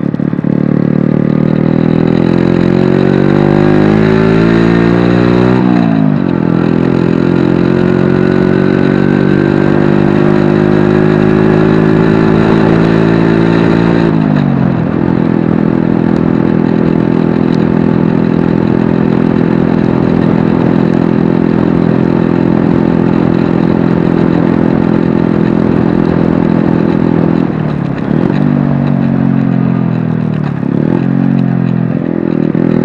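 Honda Magna 50's small four-stroke single-cylinder engine, heard from on the bike while riding. Its pitch climbs under acceleration and drops sharply twice, about six and fourteen seconds in, as it shifts up. It then runs at a steady pitch and eases off near the end.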